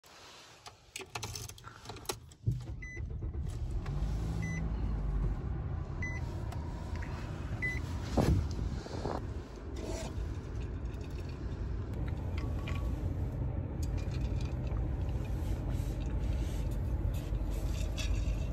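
Keys jingling, then a Nissan's engine starts about two and a half seconds in and settles into a steady idle heard from inside the cabin. A dashboard chime beeps four times, about a second and a half apart, and a couple of knocks come from the centre console.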